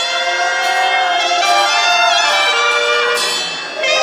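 Banda sinaloense wind section playing an instrumental passage between sung lines: trumpets, trombones and clarinets holding sustained notes in harmony, easing off briefly near the end.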